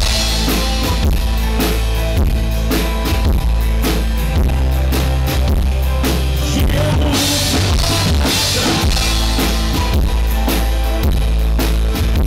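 Live band playing an instrumental passage: a drum kit keeps a steady beat of kick and snare under strummed acoustic guitar, with no singing.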